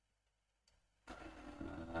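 Near silence for about a second, then a man's voice starts up.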